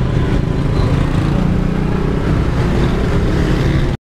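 Road traffic noise with a vehicle engine running close by: a steady low rumble, cut off suddenly near the end.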